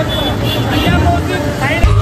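Street crowd noise: indistinct overlapping voices over music and a steady low rumble. Near the end it cuts suddenly to loud, bass-heavy music.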